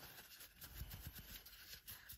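Faint rubbing and rustling of a paper towel wiping the inside of a throttle body.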